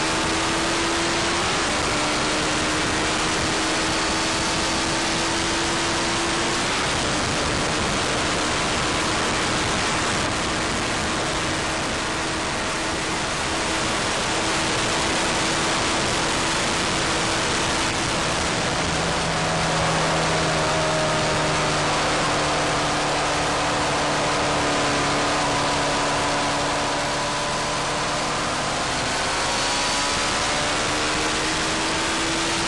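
A Honda motorcycle running flat out at close to 300 km/h. Heavy wind rush over the microphone covers a steady high-revving engine note that barely changes pitch.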